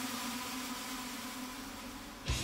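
A steady low hum over an even hiss, slowly dropping a little in level.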